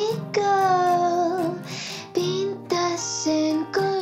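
Dreamy pop song with a female lead vocal singing over soft guitar and bass accompaniment, the voice phrases starting and stopping several times.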